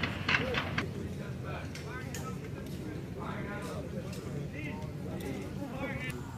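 Distant, indistinct voices over a steady low rumble, with a few sharp clicks in the first second.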